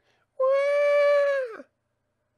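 A single long "waah!" wail imitating a crying baby, held level for about a second and dropping in pitch as it ends.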